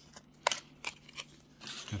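A few sharp plastic clicks as a toy lightsaber accessory is worked free of its cardboard and tape packaging, the loudest about half a second in.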